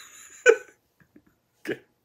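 A man's single short burst of laughter, about half a second in.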